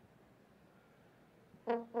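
Quiet room tone, then a brass ensemble of tubas, trombones and trumpets comes in with a loud, short chord near the end, the start of a run of detached notes.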